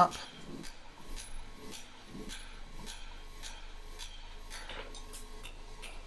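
A hand hammer striking red-hot square steel bar on an anvil in a run of light, quick blows, rounding over the end of the bar.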